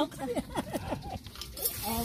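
Voices of several people talking over one another, with a short hiss near the end.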